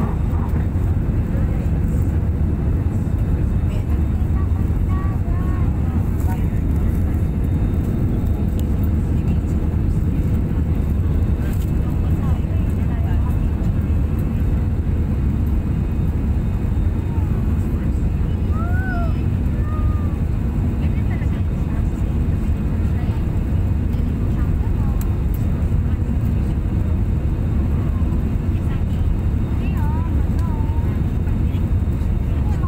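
Airliner cabin noise in flight: the steady low rumble of the engines and the airflow over the fuselage, heard from a seat by the wing.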